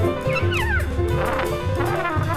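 Small-group jazz recording: acoustic bass and held piano notes under a trumpet that slides downward in quick falling smears about half a second in.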